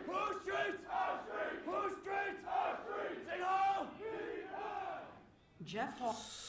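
A crowd of men chanting a slogan together, shouted in a steady repeating rhythm, dying away about five seconds in.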